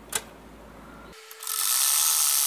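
Usha sewing machine: a single click just after the start, then the machine starts stitching a seam a little over a second in and runs steadily.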